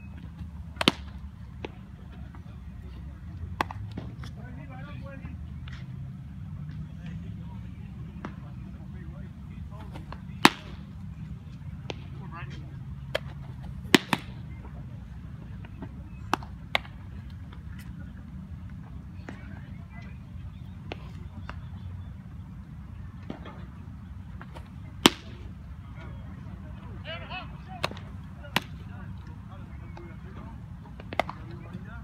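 Baseball pitches popping into catchers' leather mitts: sharp single cracks every few seconds, the loudest about ten, fourteen and twenty-five seconds in. A low steady rumble runs underneath, with faint distant voices.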